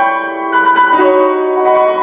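Grand piano playing an improvisation: held chords ringing on, with new chords struck about every half second, the first reaching high into the treble.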